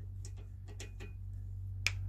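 Light metal clicks of a small hand-held socket turning a small bolt at a tie rod end, with one sharper click near the end, over a steady low hum.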